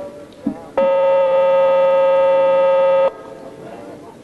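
An electronic buzzer sounds one loud, steady tone for a little over two seconds, starting about a second in and cutting off suddenly.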